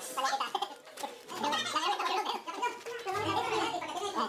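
Indistinct voices talking, with no clear words, dipping briefly about a second in.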